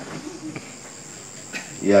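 Crickets chirping steadily behind a pause in a man's speech over a microphone, with his voice coming back in near the end.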